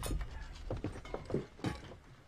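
Irregular light knocks and clicks, several a second, the clatter of people moving about a small room.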